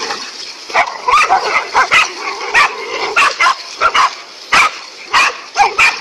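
Dogs barking aggressively at a snake, in rapid, irregular barks about two a second.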